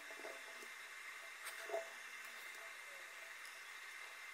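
Faint room tone: a low hiss with a thin steady high tone, and a soft brief handling sound about one and a half seconds in.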